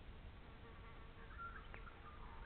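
Faint buzzing of a flying insect, such as a fly, with short high notes over it and a single sharp click near the end.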